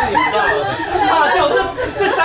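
Several people talking over one another in excited chatter.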